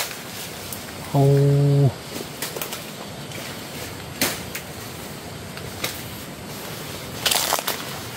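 Scattered crackles and snaps of dry leaves and twigs, with a louder rustling crunch near the end as someone pushes through forest undergrowth; a man's long drawn-out "oh" about a second in.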